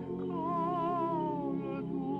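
Choir singing a slow Christmas song with long, held notes and vibrato, the melody stepping slowly down.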